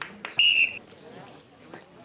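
A basketball referee's whistle blown once: a short, steady high note about half a second in.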